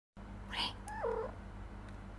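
A domestic cat gives one short meow about a second in; the call holds a steady pitch, then drops at the end. Just before it there is a brief breathy sound.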